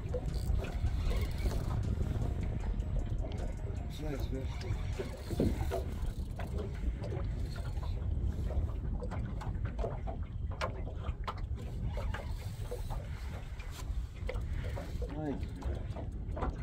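Wind rumbling on the microphone in open air over the water, uneven and constant, with scattered light clicks and brief snatches of a voice.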